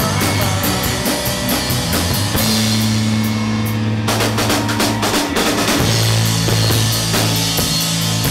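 Live rock band playing electric guitars, bass guitar and a drum kit. The cymbals drop out briefly about three and a half seconds in, and the full kit comes back in about four seconds in.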